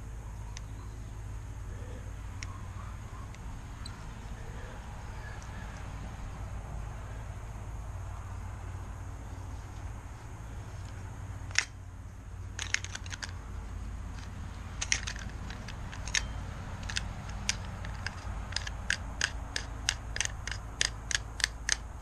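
Small metal clicks and taps from a Daiwa spinning reel being reassembled by hand, over a steady low hum. A single sharp click comes about halfway, then clusters of clicks that settle into a regular clicking of about three a second near the end.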